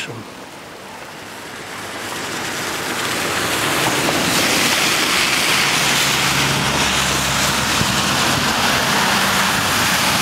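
Rushing floodwater of the swollen, muddy Gradašnica river at its confluence with the Nišava, high after heavy rain: a steady loud rush that swells over the first few seconds and then holds.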